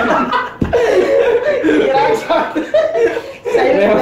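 Several men laughing and chuckling, mixed with bits of speech, and a single short low thump about half a second in.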